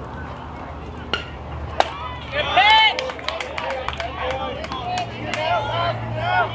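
A sharp crack of a softball a little under two seconds in, then a loud, high-pitched yell and scattered shouting from players and spectators that carries on to the end.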